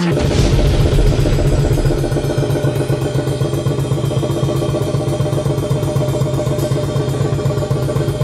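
Melodic death metal drumming: a drum kit played with fast, even strokes and constant cymbal wash, over a low, held droning chord.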